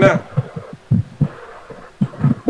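A short spoken word, then a few dull, low thumps at an uneven pace over a faint background hum.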